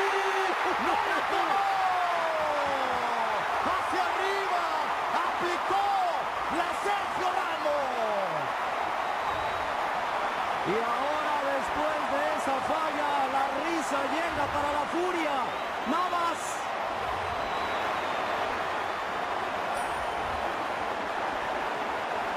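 Large stadium crowd: a dense, steady din of many voices, with individual shouts rising and falling above it.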